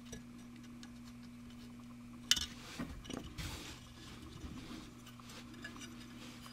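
Sprue cutters snipping white plastic model-kit parts off the sprue: one sharp snip about two seconds in, then a few lighter clicks and a short rustle of the plastic parts tree in the hand.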